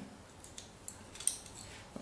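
A few light clicks and taps of a plastic transforming toy-robot figure's parts as they are handled and fitted together. The clearest click comes about a second and a quarter in.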